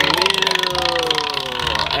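A spinning prize wheel with its clicker flapping over the pegs: rapid ticking that slows as the wheel coasts down.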